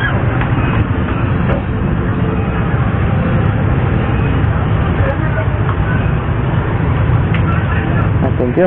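Steady low rumble of street traffic with indistinct voices of people nearby.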